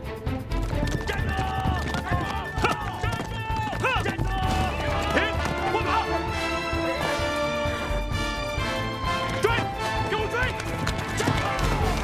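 A group of ridden horses galloping on a dirt track, hoofbeats throughout, with horses neighing repeatedly, over background music.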